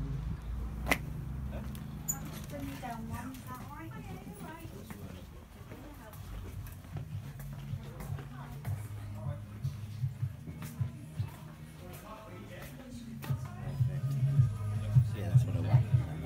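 Shop ambience: indistinct voices and music over a low steady hum, with a sharp click about a second in and a run of regular knocks near the end.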